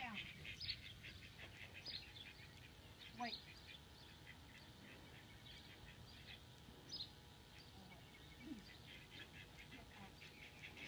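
Near silence, with faint scattered bird calls, among them a few soft duck quacks.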